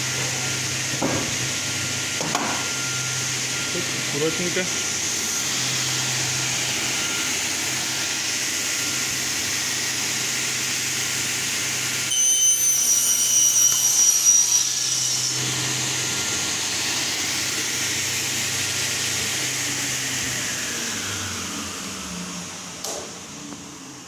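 Sliding-table panel saw (Y 45-2) running steadily with a low hum. About halfway through it cuts a panel for a few seconds, louder and with a high-pitched whine. Near the end it slows and winds down, its pitch falling.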